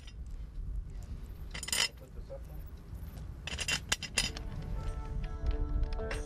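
A few sharp metallic clinks as a cast metal well cap is pressed and seated onto the well casing, over a steady low rumble. Background music with plucked tones comes in about four seconds in.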